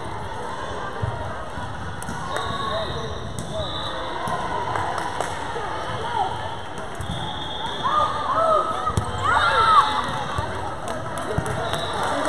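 Echoing gym ambience during a volleyball match: voices talking and calling out, loudest about eight to ten seconds in, with scattered ball bounces and thuds.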